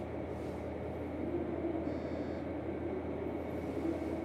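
Steady hum inside a 735-series electric train standing at a platform, its onboard equipment running, with a faint steady high whine.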